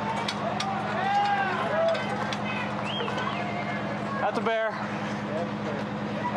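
Fire department aerial ladder truck's engine running steadily, with people's voices chattering over it and scattered sharp clicks. A brief pitched sound cuts through about four and a half seconds in.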